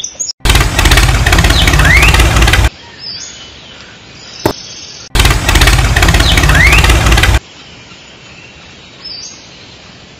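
A loud dubbed engine sound effect, played twice for about two seconds each, once about half a second in and again about five seconds in, the same clip both times. Between and after, birds chirp faintly.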